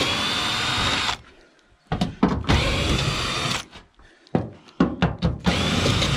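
Makita cordless drill/driver backing roofing screws out of metal roof-tile sheets: three short runs of the motor whine, each rising as it spins up, with a few clicks in between.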